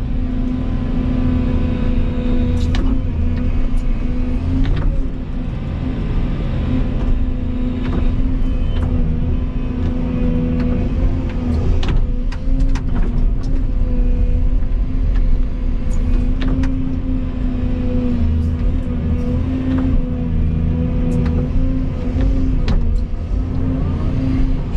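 Volvo EC220E excavator's diesel engine running steadily under working load, heard from inside the cab, while the bucket digs and dumps soil. Scattered short clicks and knocks sound over the steady hum.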